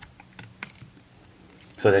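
A few light, sharp clicks and taps of stiff game cards being handled and set down on a wooden table, with a man's voice starting to speak near the end.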